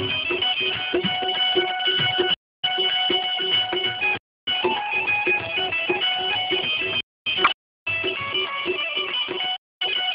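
Instrumental Gujarati folk music: a high melody stepping between held notes over a steady beat of about three strokes a second. The music is cut by several brief dropouts to total silence.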